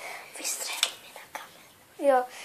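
Faint whispering with two short, light clicks from a plastic toy disc blaster being handled.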